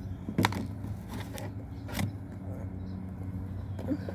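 Biting into and chewing a chocolate-topped yeast donut, with two sharp clicks about half a second and two seconds in. A steady low hum runs underneath.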